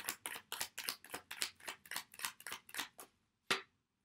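A deck of tarot cards being shuffled by hand: a quick, even run of card flicks, about six a second, that stops about three seconds in, followed by one more sharp card snap.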